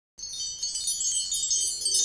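High, shimmering chime sparkle of many bright tones, starting a moment after a brief silence. It is the sting that opens a title card for a new song.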